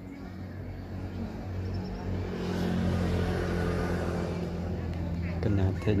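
A motor vehicle engine running steadily, growing louder over the first few seconds and then holding. A voice starts near the end.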